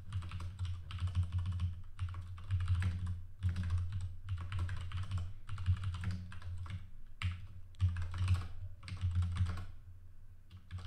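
Typing on a computer keyboard: fast runs of keystrokes in bursts, broken by brief pauses.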